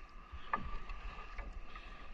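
Water lapping quietly around a small wooden outrigger canoe as a fishing net line is hauled up out of the sea, with two faint drips or splashes, about half a second in and again near the middle.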